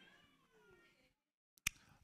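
Near silence in a pause between sentences: a faint, wavering, fading tone in the first second, then quiet broken by a single click shortly before the end.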